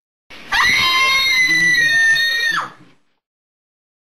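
A single loud, high-pitched scream, held for about two and a half seconds. Its pitch sweeps up at the start, stays fairly steady, and drops away at the end.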